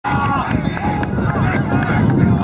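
Voices calling out over a steady low background noise.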